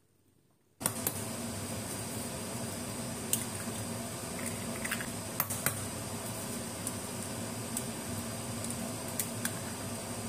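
Eggs being cracked into a ceramic bowl by hands in plastic gloves: scattered small clicks and taps over a steady hum of room noise that starts suddenly about a second in.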